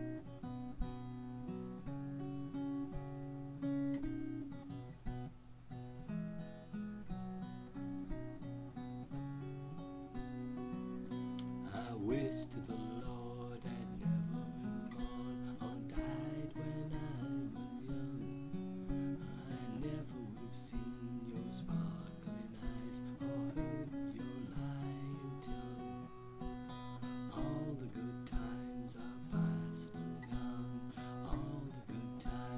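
Acoustic guitar playing strummed chords, with chord changes every second or two and sharper, busier strokes from about twelve seconds in.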